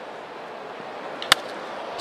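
Steady murmur of a ballpark crowd, broken a little over a second in by a single sharp crack of a bat hitting a pitched baseball.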